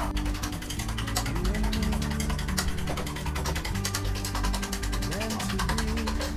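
Eggs being beaten in a bowl with a utensil: rapid, even clicking of the utensil against the bowl. Background music with sustained low notes plays underneath.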